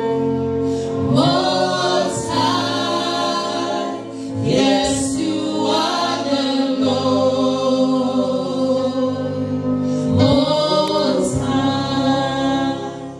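A small group singing a gospel worship song through microphones, a man's voice leading with women's and men's voices joining. The singing runs over steady held chords.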